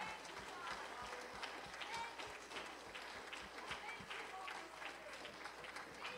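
Congregation clapping hands, scattered and uneven claps, with faint voices underneath.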